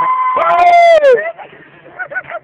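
A voice singing one loud, long held high note, which steps down in pitch partway through and falls off after about a second, followed by bits of talk. The singing is bad enough that a listener complains it is hurting their ears.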